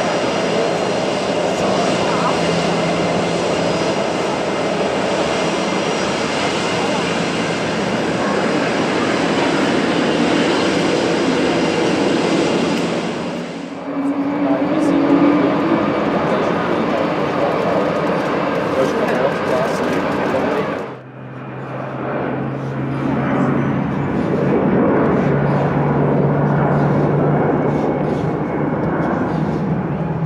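Steady jet engine noise from an Emirates Airbus A380 taxiing, broken twice by abrupt changes. After the second change, about two-thirds through, comes the jet noise of a Swiss Airbus A319 climbing out after takeoff, with a low steady drone.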